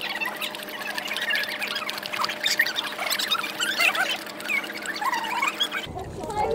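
A large dog lapping water from a plastic bucket: quick, irregular wet slurps and squeaky tongue sounds, over a faint steady hum.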